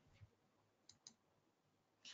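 Near silence broken by three faint clicks, one about a quarter second in and two close together around one second: a computer mouse clicking to advance a presentation slide.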